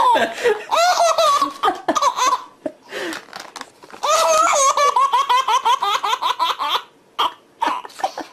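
A baby laughing hard in repeated bursts of belly laughter as paper is torn in front of her. There are short peals in the first two seconds, a brief lull, then a long unbroken run of laughing from about four seconds in.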